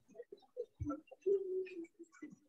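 A dove cooing: a few short low notes, then one longer held coo about a second and a half in.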